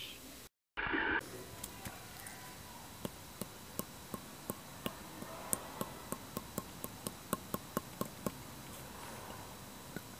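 A run of faint, sharp clicks, evenly spaced and speeding up from about three to about four a second, that stops a little after eight seconds; a brief rush of noise about a second in.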